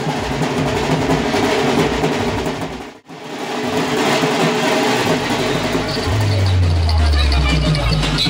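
Loud music from a DJ sound system mixed with crowd voices. The sound drops out for an instant about three seconds in, and a deep held bass comes in near the end.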